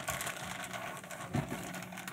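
Clear plastic bag crinkling faintly as hands pull neoprene lens cover pieces out of it.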